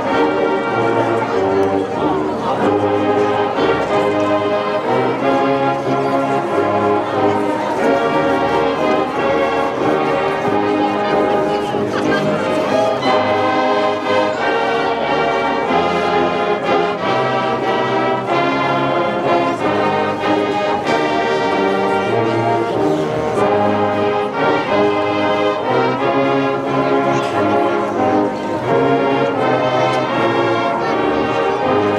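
High school marching band playing, brass to the fore, in held chords that change every second or two.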